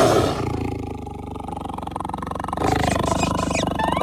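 Cartoon bulldog's long, rough roar, loudest at its onset and lasting about two and a half seconds. Cartoon music with short gliding notes comes in near the end.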